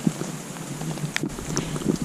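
Close rustling of clothing and gear with scattered small knocks and ticks, and one sharper click about a second in: handling noise against a chest-mounted action camera's microphone.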